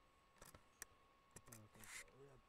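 A few faint, sharp clicks, like a computer mouse, spaced about half a second apart, then a short voiced hum and a brief rustle near the end.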